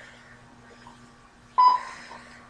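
Exercise bike's electronic console giving one short beep about one and a half seconds in, as a button on it is pressed. A faint steady low hum runs underneath.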